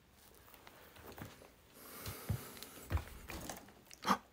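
Quiet room with faint rustling and a few soft knocks and clicks, as of a hand moving among cans and bottles.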